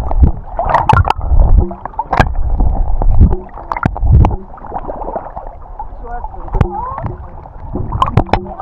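Seawater sloshing and gurgling around a camera held at the surface, dunking under and coming back up, with small splashes and drips. It is heavy and churning for the first four seconds or so, then lighter.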